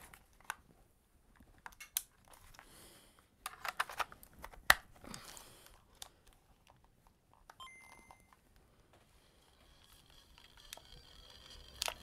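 Small clicks and rustling from hands handling and working at a small red object, with a sharp click nearly five seconds in and a brief high tone a little before eight seconds.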